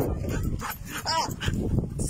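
A dog gives one short, high-pitched cry about a second in, over low rumbling noise.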